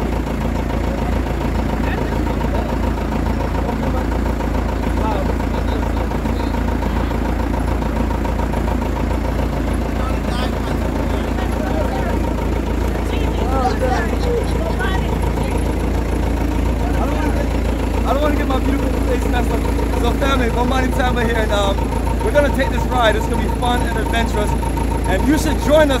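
Steady low rumble of the old open-backed 4x4 truck's engine idling, under people talking as they settle into the back, with the talk growing busier in the second half.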